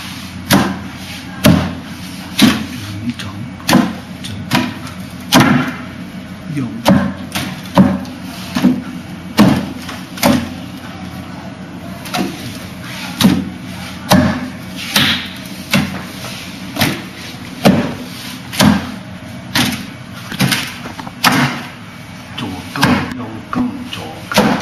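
Hands and forearms striking a Wing Chun wooden dummy's wooden arms and trunk: a run of sharp wooden knocks and slaps, about one or two a second at an uneven pace.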